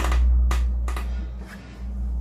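A paper slip and a playing card being handled and drawn from a fabric pocket: a few short rustles and clicks over a steady low hum.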